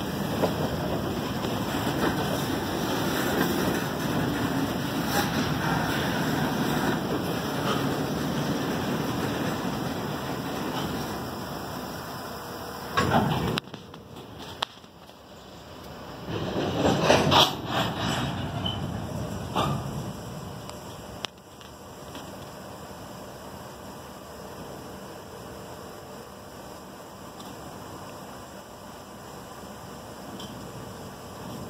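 Freight cars rolling slowly past on the rails in reverse, a steady rumble of wheels and rolling stock. About halfway through this drops to quieter steady background noise with a few sharp knocks.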